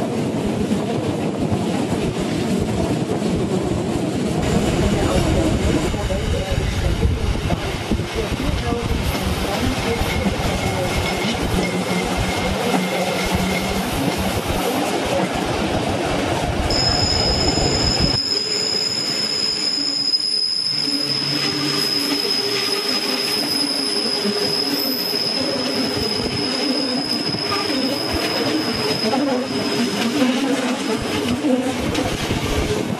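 Bernina Railway train running, heard from a coach window: continuous rumble of wheels on rail. From a little past halfway a steady high-pitched squeal of wheel flanges grinding on the rails of a tight curve joins in and holds to the end.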